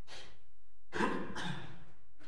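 Sheet music and a folder being handled at music stands: paper rustling with light knocks, a short burst at the start and a longer, louder one about a second in.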